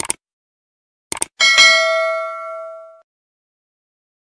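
Subscribe-button sound effect: a pair of short clicks, another pair of clicks about a second in, then a bell ding that rings out and fades over about a second and a half.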